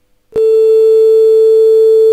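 Loud, steady pure tone of a 426 Hz tuning fork, played by a virtual resonance-tube simulation. It sets in abruptly about a third of a second in and holds one pitch, signalling that the air column in the tube has reached resonance.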